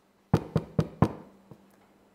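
Knuckles knocking four times in quick succession on a wooden pulpit, like a knock at a door, followed by a faint fifth tap.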